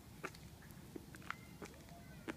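Faint, scattered light clicks and ticks, a few each second at uneven spacing, from a balance bike and a stroller rolling along a concrete sidewalk.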